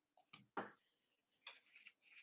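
Near silence: two faint clicks in the first second, then a soft scratching rustle near the end as a hand scratches the head.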